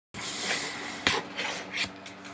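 Handling noise as a webcam is moved: rustling with a sharp knock about a second in and a few softer bumps, over a faint steady hum.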